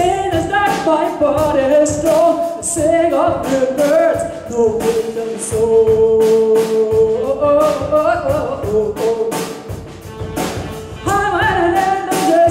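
Live jazz band: a woman sings a melody at the microphone over a drum kit's cymbal strokes, holding one long note near the middle.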